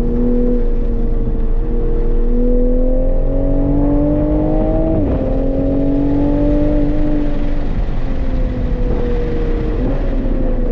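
Toyota MK5 Supra engine pulling hard on a race track, its note climbing steadily. It drops sharply at a quick upshift about halfway through, climbs again, then sinks as the driver eases off, with a short jump in revs just before the end.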